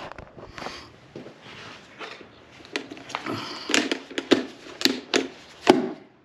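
A Lovork dual-head LED work light and its telescoping steel tripod being folded down by hand: rustling and sliding, then a string of sharp clicks and clacks, most of them in the second half.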